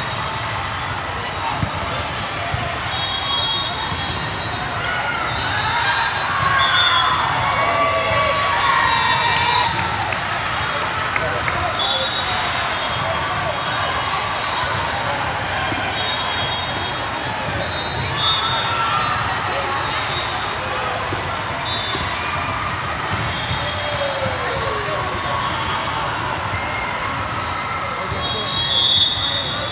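Busy indoor volleyball tournament ambience in a large echoing hall: a steady din of players' voices and shouts, with volleyballs being struck and bouncing across the courts, and short high whistle blasts now and then from referees.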